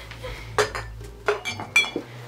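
Kitchenware clattering: about four sharp metal clinks with a short ring, coming in the second half and loudest near the end, over a low steady hum.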